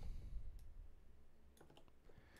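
A few faint clicks of computer keystrokes during text editing, one about half a second in and a quick cluster near the end, over a low steady hum.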